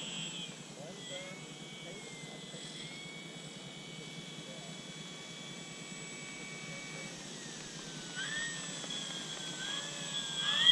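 The brushless electric motor (a 4258 650 KV unit) and propeller of an FMS F4U Corsair RC model running at low throttle as it taxis on grass. A thin steady whine dips in pitch about seven seconds in, then rises again about a second later as the throttle is worked.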